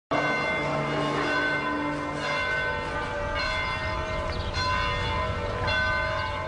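Church bells ringing, a new stroke about every second, each one ringing on under the next.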